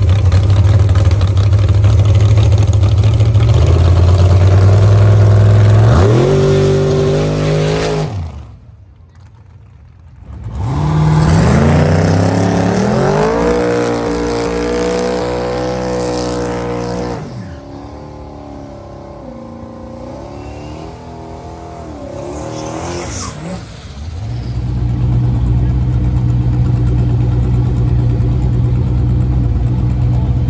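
Drag car's engine idling loudly at the starting line, then launching with the revs climbing through the gears. A second stretch of hard acceleration follows with the pitch dropping at each shift, and near the end another car's engine idles loudly.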